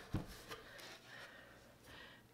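A light knock just after the start, a smaller one about half a second in, then faint rubbing as a steel mower blade is handled and seated on a blade balancer mounted on a wooden board.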